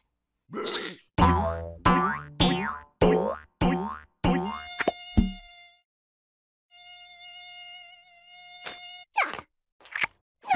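A cartoon mosquito's high, steady buzzing whine with a slight waver, heard in the second half and cutting off about a second before the end. Before it comes a quick run of about seven short sounds, each dropping in pitch, roughly two a second.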